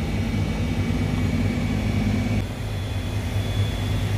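Steady machinery drone of running air-conditioning outdoor units, a low hum with faint high whines over it; part of the hum drops away about two and a half seconds in.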